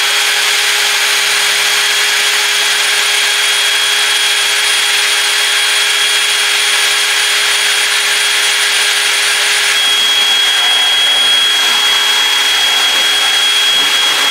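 DeWalt cordless drill running continuously with a steady whine as its bit bores a hole through the middle of a PVC plug held in a vise grip.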